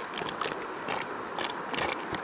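A creek running steadily, with light irregular clicks and scrapes from a plastic gold pan and squeeze bottle being handled while black sand is washed out of the pan.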